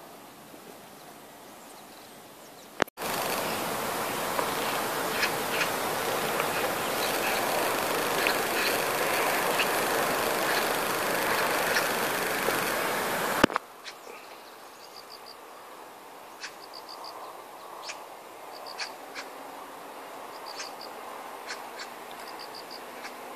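Outdoor ambience. About three seconds in, a loud, steady rushing noise cuts in with a click and runs for about ten seconds, then stops abruptly. After that the ambience is quieter, with short, high trilled chirps every second or two.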